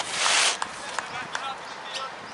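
A short burst of hiss in the first half-second, then faint outdoor background noise with a few soft clicks.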